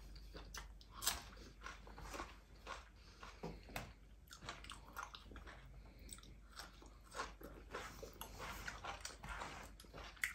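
A person biting and chewing food close to the microphone: a run of short crunches and mouth clicks while eating rice and curry by hand with a raw green chili, the sharpest crunch about a second in.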